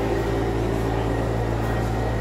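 A narrow-web label printing and finishing machine running, a steady mechanical hum as the printed label web feeds off the roll and over its rollers.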